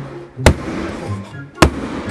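Two sharp hatchet blows against the box's wall panel, just over a second apart, over background music.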